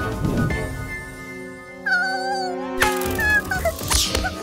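Background music with held notes, then a small cartoon creature's squeaky, wavering call about two seconds in, followed by a few short chirps near the end.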